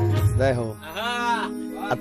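The last notes of a Gujarati folk song on harmonium and drums die away in the first half second. A single long vocal note follows, rising and then falling in pitch, over a held harmonium tone.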